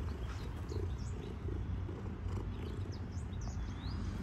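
Domestic cat purring, a steady low rumble.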